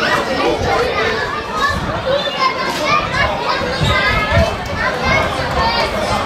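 Many children's voices chattering and calling out at once, a steady babble with no single voice standing out.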